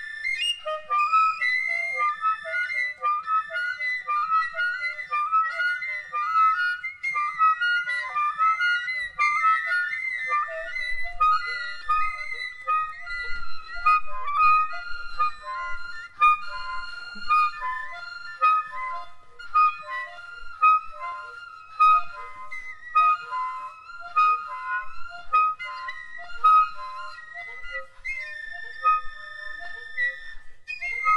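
Soprano saxophone improvising fast, unbroken runs of short high notes, free-jazz style.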